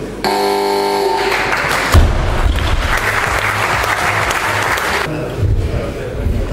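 A short electronic tone, about a second long, the referee's down signal for a completed lift, then applause. About two seconds in, a loaded barbell with rubber bumper plates is dropped onto the lifting platform with a heavy thud.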